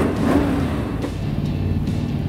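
V8 engine of a sand dune buggy running steadily as it sets off, under background music.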